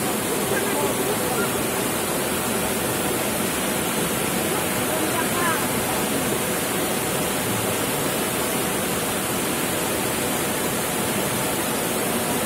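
Muddy floodwater rushing down a street in heavy rain: a loud, steady rush of water.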